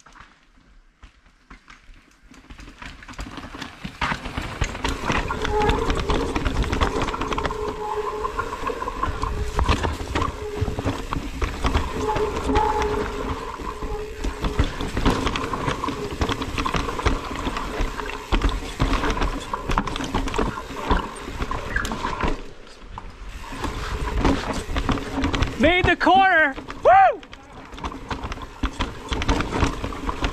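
Mountain bike descending a rocky, rooty trail: continuous clatter and rattle of the bike over rocks, with wind and trail noise. The first couple of seconds are quiet. Near the end comes a short rising-and-falling vocal cry.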